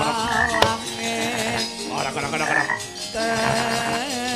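Gamelan music of a Banyumasan wayang kulit accompaniment, with a high wavering melody line over steady lower notes. A single sharp knock comes about half a second in.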